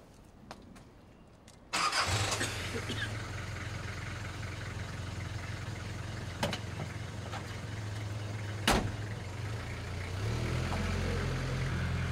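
A London black cab's engine starting with a sudden burst about two seconds in, then running steadily. A single sharp knock comes a few seconds before the end, and the engine note rises near the end.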